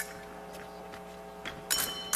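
A few sharp metallic clicks of épée blades meeting during a fencing exchange, the loudest cluster near the end, over a steady low hum.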